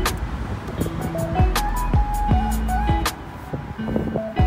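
Background music with a steady beat: bass drum hits that drop in pitch and held synth notes. The music thins out for about a second near the end.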